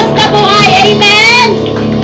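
A woman singing a praise and worship song through a microphone, backed by a live church band playing held chords. Her sung line ends about one and a half seconds in while the chords ring on.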